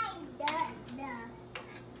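A metal spoon clicking against a frying pan a few times as shrimp in melted butter are stirred, with a short spoken phrase in the middle.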